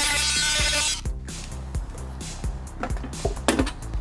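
Handheld rotary tool whining at high speed as it grinds away plastic from an e-bike's battery compartment, stopping about a second in. After that, a few light clicks and knocks of plastic parts being handled.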